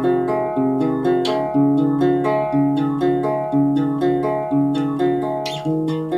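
Guitar played with the fingers: a steady pattern of plucked chords, a new one about twice a second, each left ringing.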